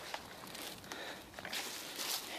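Quiet footsteps of a person walking through weeds and grass over soft bare soil, with plants brushing past.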